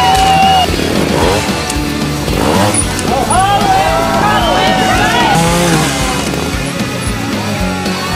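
Trials motorcycle engines revving in short, repeated throttle blips as the bikes are hopped up onto obstacles, over background music.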